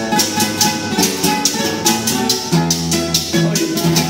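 Two acoustic guitars playing the instrumental opening of a vallenato paseo, stepping through notes and chords, with hand percussion keeping an even beat of about five short strokes a second.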